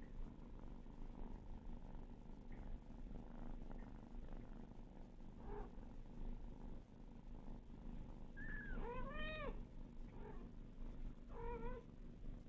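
A cat purring steadily and close by, with a few short kitten meows over it: a faint one about five seconds in, a chirp followed by a longer meow that rises and falls at about eight and a half seconds, and another meow near the end.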